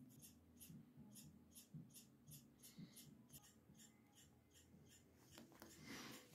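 Near silence: room tone with a faint, even high ticking about three times a second.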